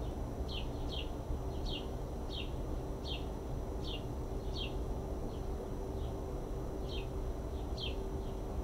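A bird calling over and over: short high chirps, each falling in pitch, about one every two-thirds of a second. Under it runs a steady low rumble of background noise.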